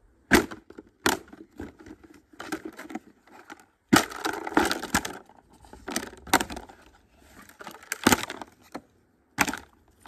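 Rubber boots stomping on a large black plastic plant pot, the plastic cracking and snapping apart under each stomp. Sharp cracks come every second or so, with a longer run of crackling about four seconds in.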